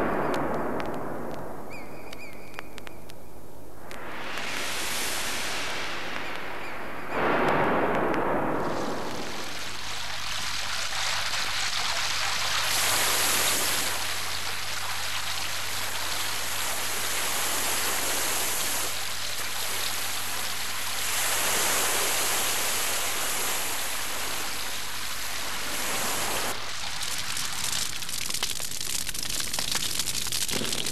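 Ocean surf: waves breaking and washing up the sand, with swelling surges near the start and about seven seconds in, then a steady rush of foaming water. Near the end it turns to a dense crackling rustle, over a low steady hum.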